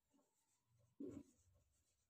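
Faint strokes of a marker writing on a whiteboard, with one short, slightly louder sound about a second in.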